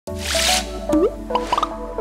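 Animated logo intro jingle: a short whoosh, then a rising swoop and a quick run of short rising plop-like blips over steady synthesized musical notes.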